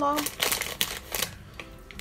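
A quick run of light rustles and clicks from small biscuits being handled in their plastic packaging. It lasts about a second and stops well before the end.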